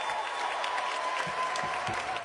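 Crowd applauding: many hands clapping steadily, with a faint steady tone underneath.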